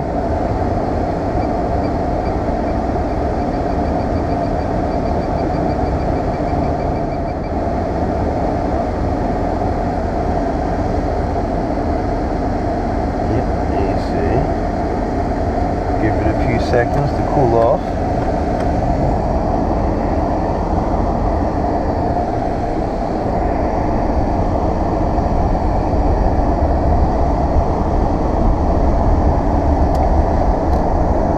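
Climate-control blower running steadily on AC inside the cabin of a 2000 Jaguar XJ8, over the low steady sound of its V8 engine. A few brief clicks come in the middle, and the low engine and road sound grows louder near the end as the car gets moving.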